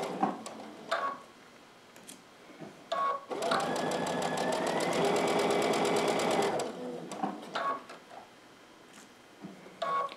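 Domestic electric sewing machine stitching a napkin hem for about three seconds in the middle, a steady motor whine with rapid needle strokes that climbs slightly in pitch, then stops. A few light clicks come before and after the stitching.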